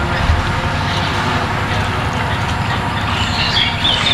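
Outdoor location ambience: a steady rushing noise with an irregular low rumble.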